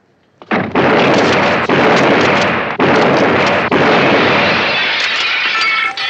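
Rapid, almost continuous gunfire blasting through a hallway door, starting about half a second in and broken by three short pauses, with glass breaking. Near the end, shards of glass tinkle as the firing trails off.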